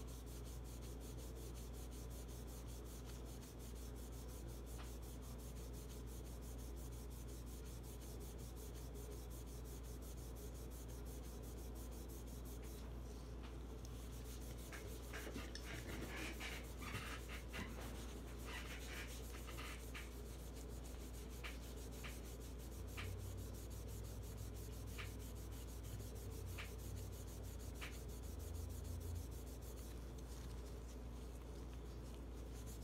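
Faint rubbing of a cloth polishing a bare steel pistol slide with metal polish, over a steady low hum. From about halfway through there are light ticks, first in a quick cluster and then spaced a second or two apart.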